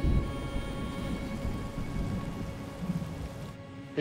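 Dark, sustained soundtrack music over a low rumbling storm ambience of rain and thunder. Both cut off just before the end.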